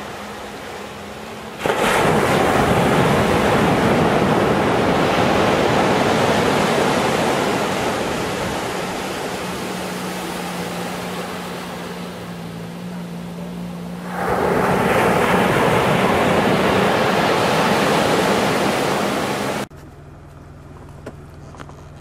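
Ocean surf on a sandy beach: waves breaking and washing up the shore in a steady rush, swelling in two long surges about two seconds and fourteen seconds in. It cuts off abruptly a couple of seconds before the end.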